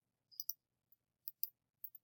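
Faint computer mouse clicks: two quick pairs of clicks and a single click near the end.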